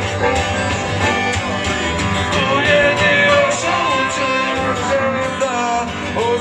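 Live blues-rock band playing: a harmonica lead line with bending notes over strummed acoustic guitar and electric guitar.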